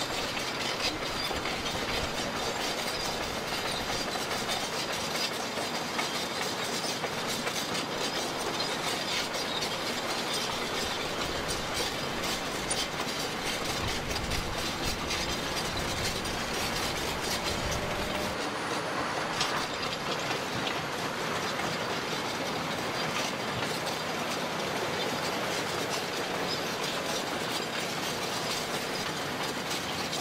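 Caterpillar crawler bulldozer running, its diesel engine under a dense, steady clatter of its steel tracks.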